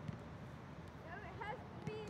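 Faint, distant voices of children in a large indoor sports hall over a low background hum, with a single soft knock near the start.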